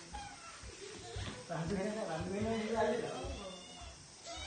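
A person's drawn-out, wavering voice, wordless or unclear, loudest from about a second and a half in for about two seconds.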